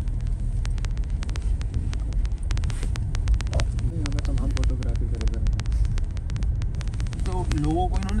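Car interior while driving on a rough forest road: a steady low rumble of tyres and engine in the cabin, with a scatter of small sharp clicks through most of it. Low voices murmur briefly in the middle and again near the end.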